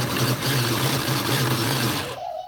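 Electric food chopper running steadily, its motor humming as the blade chops bread into breadcrumbs.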